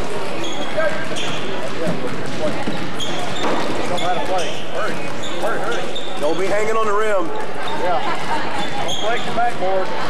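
A basketball game in a gym: a ball bouncing on the court amid shouting voices and a continuous din echoing in the hall, with short high squeaks through it.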